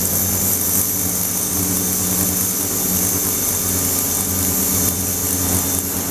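A 42 kHz ultrasonic cleaner running: a steady buzzing hum with a high hiss from the agitated water in its tank.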